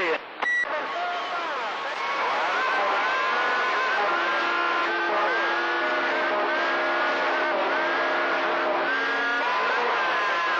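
AM CB radio receiver on a crowded channel as several stations transmit at once: a steady rush of static crossed by overlapping whistles and tones that glide up and down or hold steady, with garbled voices buried underneath. A short click and tone about half a second in, as the previous transmission drops off.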